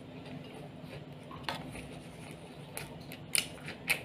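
Close-up mouth sounds of a person chewing roast pork, with a handful of short, sharp clicks in the second half, the loudest about three and a half seconds in, over a steady low hum.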